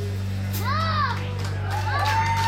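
Live band holding a low sustained chord, with a high pitched note sliding up and back down over it twice.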